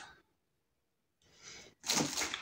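A woman's quick, sharp breath in, near the end, after a pause that is close to silent.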